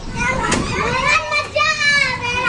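Young children's voices as they play, shouting, with a sustained high-pitched squeal in the last half second.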